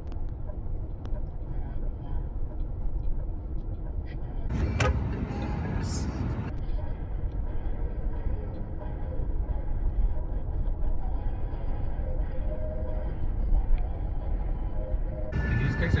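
Steady low road and engine rumble inside a moving car's cabin, with a short, brighter stretch about five seconds in.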